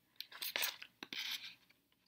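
Scissors cutting a slit into folded paper: two short snips, each starting with a click of the blades followed by a brief rasp through the paper.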